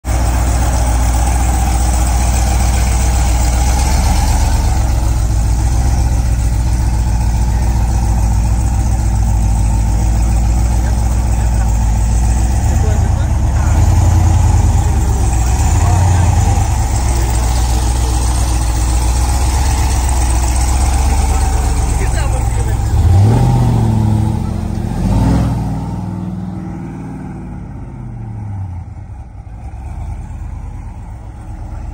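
Ram TRX's supercharged 6.2-litre Hemi V8 idling with a steady low rumble, blipped a little now and then. About three-quarters of the way in it revs sharply twice, then the sound fades as the truck pulls away.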